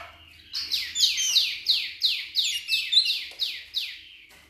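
Wambi mini songbird singing a fast, loud run of high notes, each sweeping steeply downward, about four a second, starting about half a second in; this is song used as a lure to make kolibri wulung answer.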